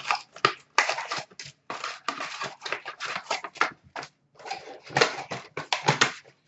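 Cardboard hockey card box and its foil card packs being torn open and handled: a quick, irregular run of crinkling, ripping and rustling.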